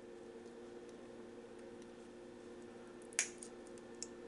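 A single sharp snip about three seconds in as flush-cut snips clip a clear plastic part off its sprue, over a faint steady hum.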